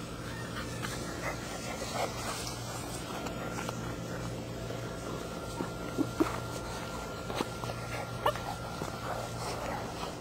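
German shepherd puppies playing tug-of-war over a toy, giving short yips and whines at irregular moments, the sharpest about six seconds in.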